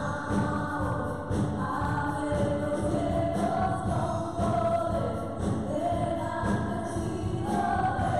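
Three women singing a gospel worship song together through microphones, holding long notes, backed by drums and keyboard.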